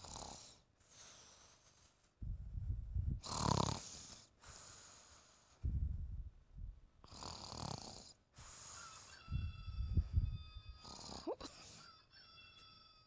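A person snoring in slow, repeated cycles, each a low rattling snore followed by a hissing out-breath, about three times. A faint steady high tone sounds over the last few seconds.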